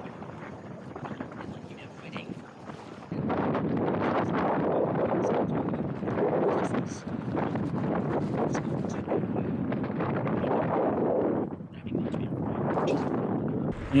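A bicycle rolling along a dirt and gravel track: tyre crunch and rumble mixed with wind buffeting the action-camera microphone. It gets suddenly louder about three seconds in and stays a steady rushing noise, dipping briefly near the end.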